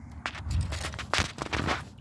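Handling noise from a phone being turned around in the hand: fingers rubbing and knocking near its microphone make a run of scratchy clicks and rustles with a brief low rumble.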